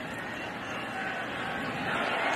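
Stadium crowd noise from a football broadcast, a steady roar of many voices that builds slightly near the end as the play develops.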